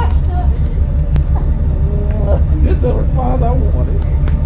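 Motorcycle engine idling with a low, steady rumble, with faint voices talking over it.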